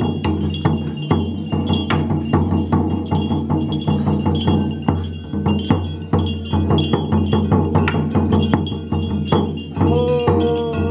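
Dao ritual music accompanying the initiation dance: bells and metal percussion struck rapidly in an uneven rhythm over a continuous ringing.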